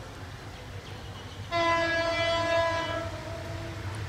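Horn of an EMD GT18LA-2 meter-gauge diesel locomotive sounding one steady blast of about a second and a half, starting about a second and a half in. Under it, the train's low rumble slowly grows louder.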